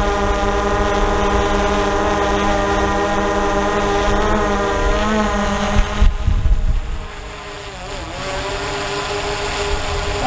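DJI Mavic 2 Zoom quadcopter's propellers giving a steady, many-toned whine while it hovers low, with small shifts in pitch. About six seconds in there are a few low thumps, and the whine turns fainter as the drone climbs to about 13 feet.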